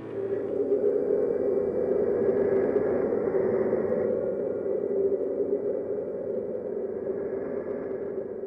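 A steady low rushing rumble with no clear pitch, easing off slightly in the second half.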